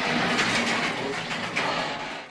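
A sectional garage door rolling along its metal tracks, a steady rattling rumble.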